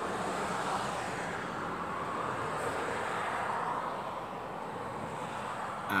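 A steady rushing noise with no clear pitch that swells over the first few seconds and eases off toward the end.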